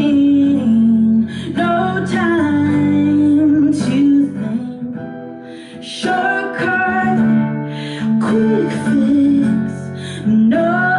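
A woman singing live, with long held and sliding notes, over a strummed ukulele; the music drops back briefly about halfway through.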